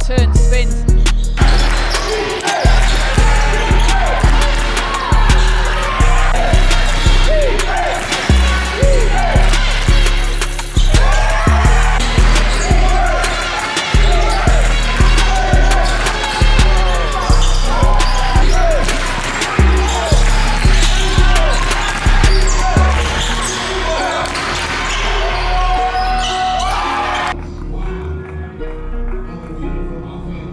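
Hip-hop music with a heavy bass beat about twice a second and a rapped vocal over it; the beat thins out in the last few seconds.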